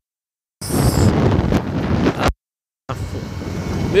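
Wind buffeting the microphone over a riding motorcycle's engine and road noise, broken twice by abrupt drops to dead silence, once at the start and once just past two seconds in.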